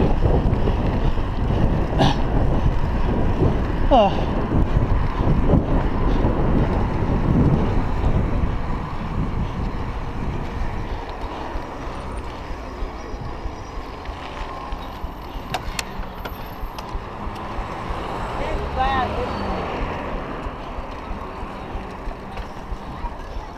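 Wind rushing over a chest-mounted GoPro's microphone as a bicycle is ridden along a road, loud for the first several seconds and then easing. A short gliding squeal sounds about four seconds in, and a wavering pitched sound near the end.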